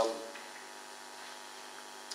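The last of a man's spoken word fading out through a microphone, then a pause with only a steady faint hiss of the room and sound system.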